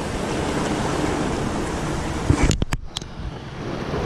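Sea surf washing among rocks, a steady rushing noise. A few sharp clicks come about two and a half seconds in, and the rush is quieter after them.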